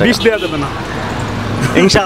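Road traffic: a vehicle engine running steadily with a low hum for about a second, with a man's voice briefly at the start and again near the end.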